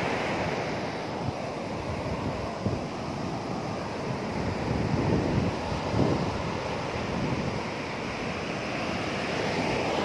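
Sea surf breaking and washing up over wet sand in a steady rush, surging louder about halfway through as a wave runs in.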